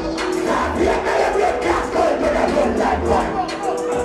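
Club crowd shouting and cheering together, many voices at once, over loud dancehall music with a steady low beat.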